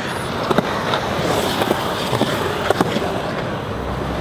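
Skateboard wheels rolling over a concrete skate bowl, a steady rushing sound broken by a handful of sharp clacks.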